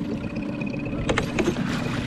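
Water splashing as a hooked northern pike thrashes at the surface and is scooped into a landing net, with a few sharp knocks about a second in. A boat motor hums steadily underneath.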